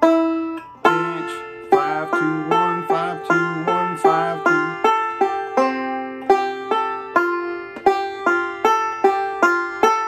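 Recording King RK-R20 five-string resonator banjo played bluegrass-style with three-finger picking in the key of F: a walk-up into pinches and rolls. One note rings briefly at first, then a steady run of sharp plucked notes follows, about three a second.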